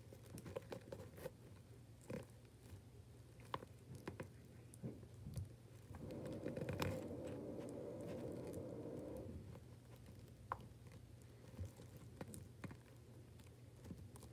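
Faint scattered clicks and rustling as small plastic action-figure blasters and accessories are handled, with a longer, louder stretch of rustling from about six to nine seconds in.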